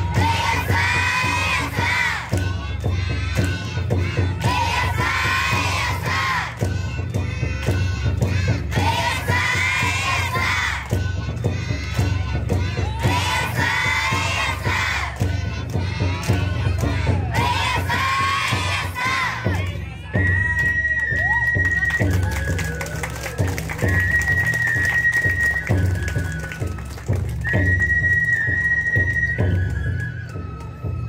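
Children's lion-dance music: young voices chanting and calling out in repeated phrases for about twenty seconds, then a bamboo flute playing long, high held notes.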